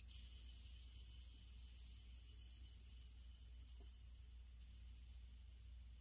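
Near silence: room tone with a steady faint hiss and low hum.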